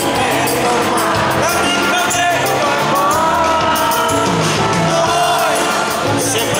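Live band with drums and keyboards playing a song, with a singing voice carrying a long-held, gliding melody over it.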